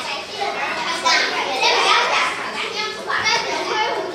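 A class of young children chattering, many voices talking over one another at once.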